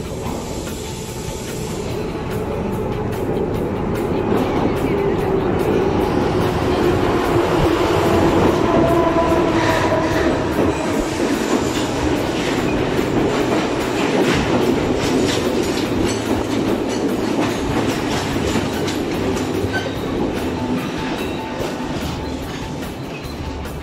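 Sri Lanka Railways Class S8 diesel multiple unit arriving at a platform and running past close by. It grows louder over the first several seconds, with a squealing tone through the middle, then a quick run of clicks as the wheels clatter over the rail joints.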